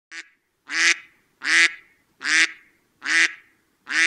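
Short, nasal, quack-like honks repeated at an even pace, about one every 0.8 seconds, six times.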